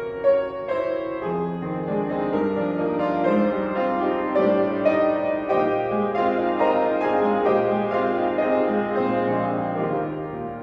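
Piano playing a church prelude: a slow, gentle piece of sustained chords and melody.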